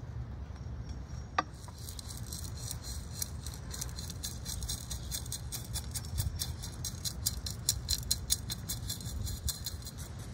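Gritty bonsai soil of pumice and gravel poured from a metal scoop into a bonsai pot and worked in, a dense run of small clicks and rattles that starts about two seconds in. A single sharp click comes just before it.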